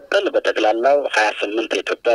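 A man talking in Amharic over a telephone line, his voice thin and cut off in the low end.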